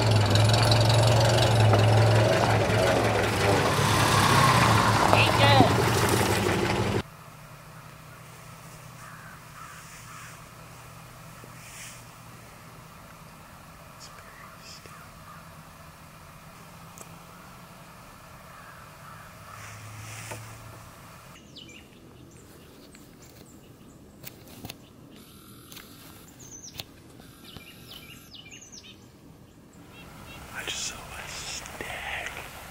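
A utility vehicle's engine running with a steady low hum, which cuts off suddenly about seven seconds in. Quiet outdoor background follows, with small rustles and a few faint bird calls near the end.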